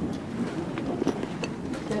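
Room tone with a steady hiss and a few faint clicks, between stretches of speech.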